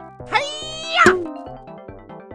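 A short, high cartoon vocal sound effect that rises in pitch, holds, then drops off sharply about a second in, over bouncy children's background music.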